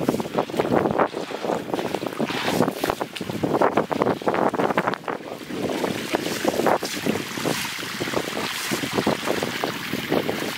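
Water splashing and sloshing over a wet concrete floor, then a stiff twig broom sweeping through shallow water on concrete, in quick scrubbing strokes.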